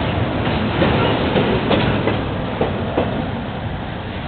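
Intermodal freight train's container cars rolling past close by: a steady rumble of steel wheels on rail, broken by irregular clicks and clacks.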